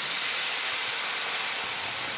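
White wine poured into a hot pan of sautéing fennel and shallots, sizzling with a steady hiss as it deglazes the pan and lifts the browned bits.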